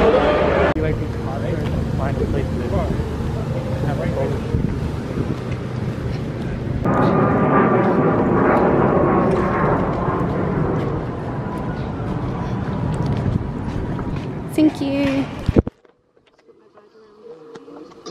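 Busy crowd chatter and background noise, then outdoor ambience with the hum of passing traffic. It cuts out suddenly about three-quarters of the way through, leaving a faint quiet hum.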